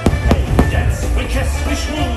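Fireworks going off: three sharp bangs in quick succession in the first second, over loud music.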